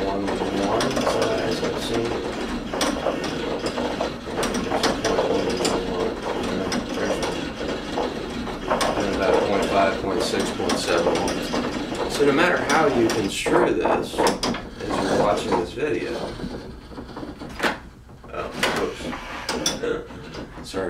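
Motor-driven rotating arm loaded with dumbbell weights, running with a continuous mechanical rattle of rapid clicks. It drops away briefly near the end, then picks up again.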